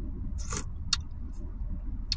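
Steady low rumble of a car running, heard from inside its cabin, with a couple of short clicks about half a second and a second in as soup is eaten from a metal spoon.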